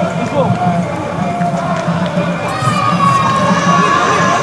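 A few people shouting and calling out in a football stadium, with one long, held call starting about halfway through, over a steady low hum.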